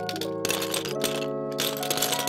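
Short intro jingle: held chords that change about every second, over a fast, dense clatter of clicks.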